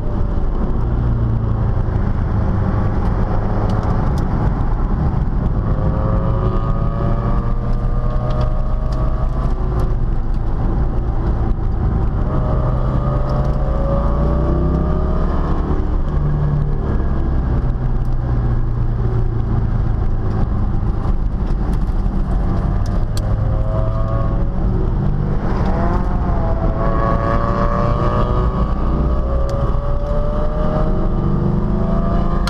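C5 Corvette's V8 engine heard from inside the cabin while lapping a race track, revving up in rising pulls several times and easing off between them, over a steady loud low rumble.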